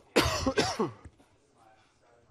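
A person coughing twice in quick succession, near the start, then quiet.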